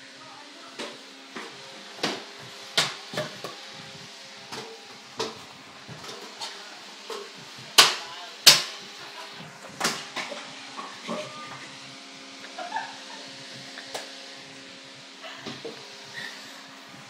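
Irregular knocks and bumps, a dozen or so, with two loud sharp ones close together about eight seconds in, over a steady low hum.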